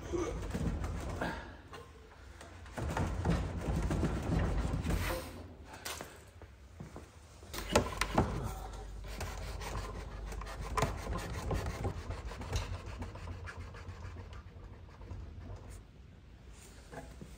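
Hardwood tenon rubbing and scraping in its mortise as a tight mortise-and-tenon door joint is worked apart and pushed back together, with scattered sharp knocks and creaks.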